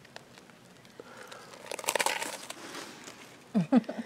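A short burst of crinkling and rustling about two seconds in, then a brief voice near the end.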